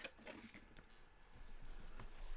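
Faint handling at a drawing desk: a sharp click right at the start, then light ticks and rustles as a pen and a small card are picked up.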